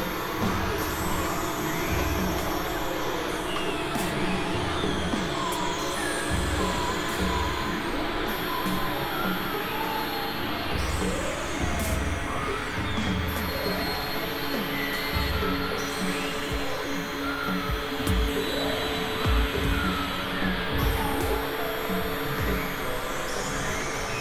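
Dense layered mix of several music and sound recordings playing at once: steady drones under many short gliding tones, with a pulsing bass. It grows a little louder for a few moments near the end.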